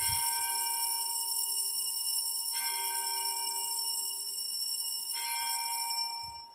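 Altar bell rung at the elevation of the chalice, marking the consecration of the wine. Its ringing holds steady and is renewed about every two and a half seconds, dying away near the end.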